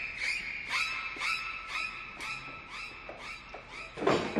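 A run of short, high squeaks, each falling in pitch, repeating about three times a second, with a faint held tone from the fading string music beneath.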